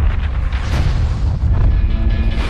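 Deep cinematic booms over a heavy rumbling bass from a military montage soundtrack, with a hard hit about once a second.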